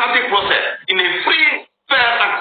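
Speech: a person talking, with a short pause near the end.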